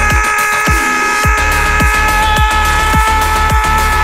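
Electronic dance music: a long held synth chord over a deep kick drum that drops in pitch on each hit, about two beats a second.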